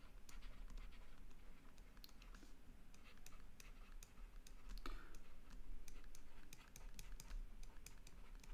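Faint, irregular clicks and taps of a stylus on a tablet screen as handwriting is written, over a steady low hum.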